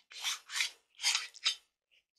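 A plastic tool-free M.2 NVMe SSD enclosure being handled and slid open by hand: four short scraping rubs, about half a second apart.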